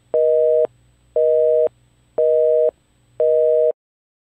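North American telephone busy signal: a steady two-tone beep, half a second on and half a second off, four times, stopping shortly before the end.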